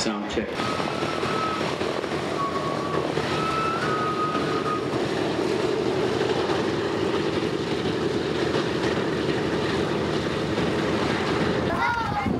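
Radial piston engines of a B-17G Flying Fortress running as it taxis, a steady drone that grows a little stronger about halfway through.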